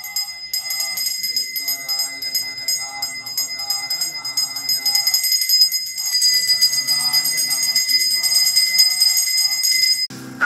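Brass pooja handbell rung continuously and rapidly, a steady shimmering ring that grows louder about six seconds in, over devotional chanting by voices.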